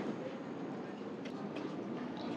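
Steady street noise: a low, even hiss of traffic and passers-by, with a few faint ticks.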